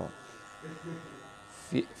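Cordless hair clipper buzzing steadily as its blade cuts short hair close to the scalp at the base of a fade.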